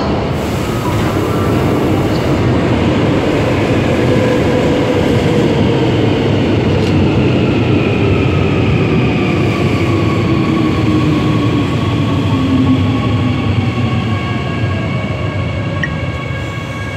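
Incheon Line 1 electric metro train running into the station past the platform and slowing. Its wheels rumble on the rails under a motor whine that falls steadily in pitch as it brakes.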